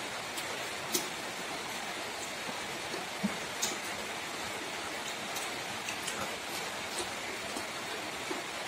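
A steady hiss with scattered small clicks and wet smacks from people eating rice and pork by hand from a metal tray. The sharpest click comes about a second in, another a little after three seconds.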